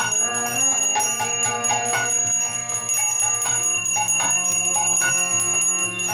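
A small brass hand bell rung quickly and without a break during an arati offering, its ringing held steady, over a harmonium drone and drum accompaniment.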